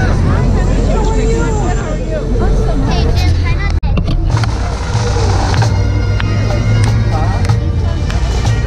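People chatting and laughing. After a brief break about four seconds in, a pipe band's bagpipes take over with steady drones under the chanter, over a steady low rumble.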